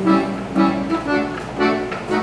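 Piano accordion playing rhythmic chords, a new chord struck about twice a second.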